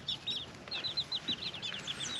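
Young chickens (teenage chicks) peeping: a quick run of short, high, falling peeps, about ten a second through the second half.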